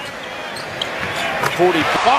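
A basketball being dribbled on an arena hardwood floor, about two bounces a second, over the steady murmur of the arena crowd.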